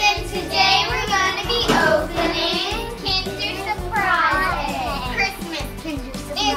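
A group of children singing together in high voices, with held notes.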